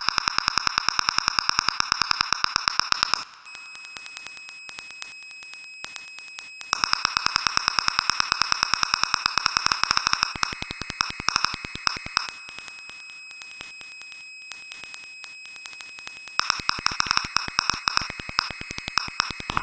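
Experimental electronic music from an EMS Synthi VCS3 synthesizer: a fast train of clicking pulses over a hissing, buzzing noise band. About three seconds in it drops back to sparser clicks under a steady high whistle, and the dense pulsing returns twice, about seven seconds in and near the end.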